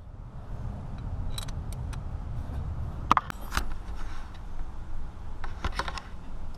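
A wrench clinking on the nuts of the exhaust manifold studs as they are tightened: scattered sharp metallic clicks, the loudest about three seconds in, over a steady low rumble.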